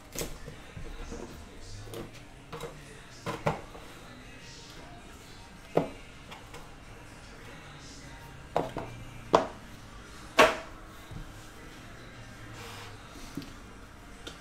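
Handling noise from a trading-card box being opened on top of a metal tin: a series of sharp taps and knocks at irregular intervals as the cardboard box and thick card stack are set down and shifted. The loudest knocks come about six, nine and ten seconds in.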